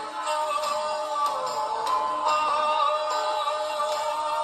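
A male vocalist singing long held notes that slide down in pitch, over a band accompaniment.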